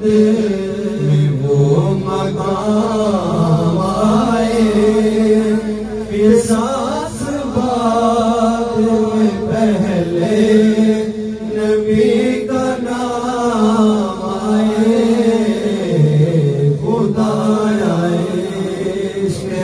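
Men singing a Urdu naat in a chanting style through microphones: a lead voice whose melody rises and falls over a steady held drone.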